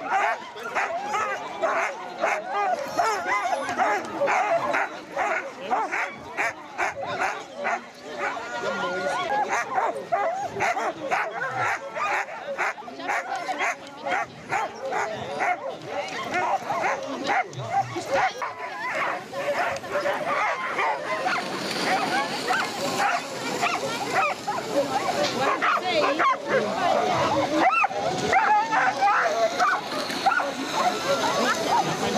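Many harnessed sled dogs (huskies) barking, yipping and whining without a break, with calls from several dogs overlapping. This is the excited din of teams held back at a race start.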